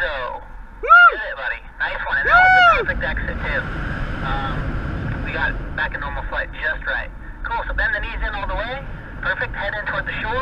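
Wind rushing over the microphone, with two loud rising-then-falling cries about one and two and a half seconds in, followed by indistinct talking.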